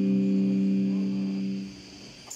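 A live metal band's last held chord: a steady low drone with a slow pulsing underneath that stops abruptly about one and a half seconds in, leaving only the quieter sound of the room.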